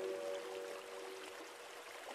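Soft relaxation music, a few sustained notes dying away, over the steady rushing of a waterfall.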